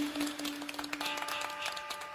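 Outro music: a held low note, joined about a second in by a sustained chord, over a scatter of light clicks.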